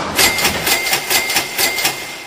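Car engine being cranked by its starter: a fast, even chugging of about six to seven strokes a second with a steady high tone running under it.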